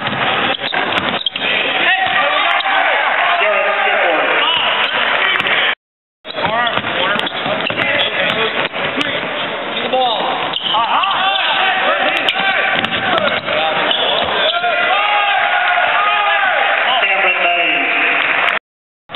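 Game sounds on a hardwood basketball court: the ball bouncing, sneakers squeaking, and the voices of players and spectators calling out. The sound drops out for a moment about six seconds in.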